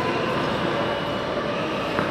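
Steady noise of skating inside an indoor ice rink: skate blades scraping and gliding over the ice against the hum of the rink hall.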